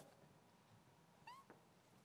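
Near silence: room tone, broken about a second and a quarter in by one faint, short rising squeak and a small click just after.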